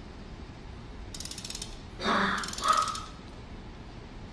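A music box being wound by hand: two short runs of fast ratchet clicking from the winding mechanism, about a second apart, with a brief louder noise between them.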